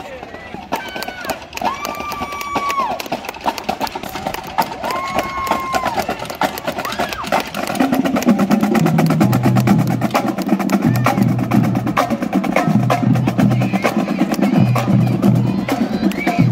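High school marching band drumline playing a cadence: rapid snare strokes and sharp rim clicks. About halfway in, low held notes join the drums, breaking off and returning in a rhythm.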